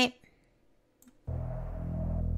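After a faint click, a low, steady synthesizer music bed starts abruptly a little over a second in and holds: the show's closing music after the sign-off.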